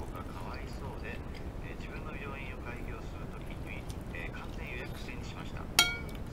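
A metal spoon strikes a ceramic soup plate once near the end, a sharp clink with a short ring.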